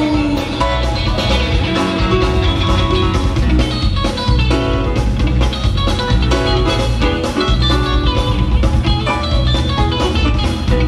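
Live reggae-rock band playing an instrumental passage through a concert PA: guitar lines over a steady bass and drum groove.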